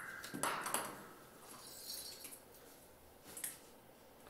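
A few light taps and clatters as a capuchin monkey handles small toy balls on a wooden perch, a short cluster in the first second and one more near the end.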